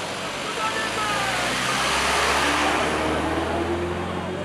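A road vehicle passing close by, its tyre and engine noise swelling to a peak about two seconds in and then fading, with voices in the background.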